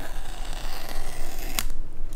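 The paper tear strip of an Apple Watch box being pulled off, a steady rough ripping for about a second and a half that ends in a sharp snap as the strip comes free.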